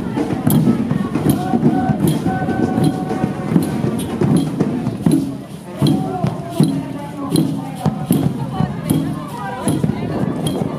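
Street parade music from a marching group: a bass drum beaten steadily, about two strokes a second, with many voices over it.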